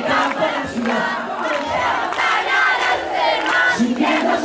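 Large concert crowd cheering and screaming, many high voices overlapping, with little band music under it.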